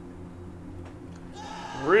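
A quiet pause holding only a low steady hum and room tone, with a man's voice starting up near the end.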